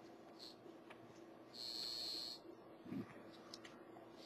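A soft swish of a paint brush working epoxy resin, once, about a second and a half in and lasting under a second, over a faint steady hum.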